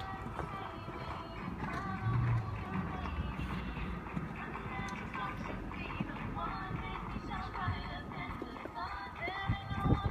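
Background music with indistinct voices, and a horse's hoofbeats as it canters over the sand of a show-jumping course, a few sharper knocks near the end.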